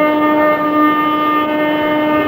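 Carnatic classical music in raga Keeravani: one long, steady note held, with no drum strokes.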